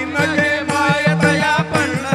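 Devotional bhajan sung by a group of men's voices, with small hand cymbals and a drum beating about four times a second under a steady held drone.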